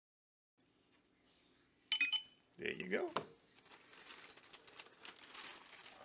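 A short electronic sound effect from a gadget: a sharp beep about two seconds in, then a warbling tone that glides up and down. After it comes the crinkle of a plastic comic-book bag being handled.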